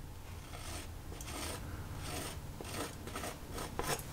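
Painting knife scraping oil paint across a stretched canvas in a series of short strokes.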